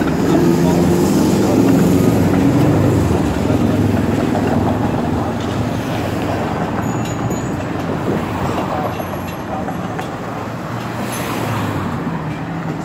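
A TTC Flexity Outlook streetcar passing close by, its steady electric motor hum and rolling rail noise fading over the first few seconds as it moves off. Busy street traffic noise carries on after it.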